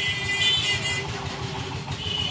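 Steady engine rumble of passing road vehicles, with a steady high-pitched tone over it for about the first second.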